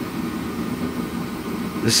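A steady low mechanical hum runs unchanged, with a man's voice starting a word near the end.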